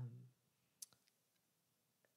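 Near silence, with a single short, sharp click a little under a second in.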